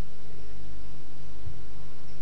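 Steady electrical mains hum with a constant background hiss on the audio track of an old broadcast recording.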